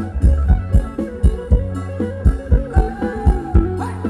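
A live Thai ramwong dance band playing an instrumental passage: a steady, driving drum beat under a bright melody line.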